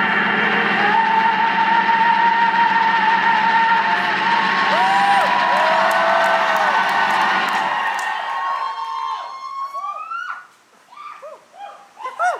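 A live rock band and singer hold a loud, sustained closing chord that cuts off about eight seconds in. Audience members whoop and cheer as the music stops.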